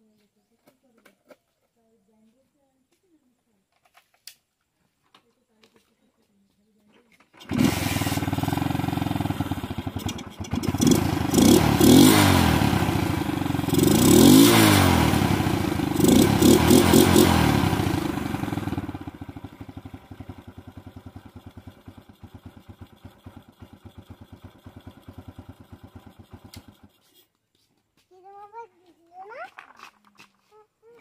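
Old motorcycle engine, running with its air filter removed. It starts about a quarter of the way in, is revved up and down several times, settles to a steadier idle, then cuts off abruptly near the end.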